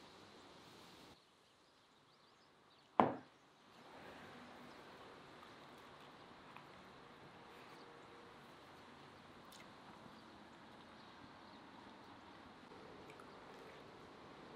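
A cup set down on a wooden table: a single sharp knock about three seconds in, over faint outdoor background.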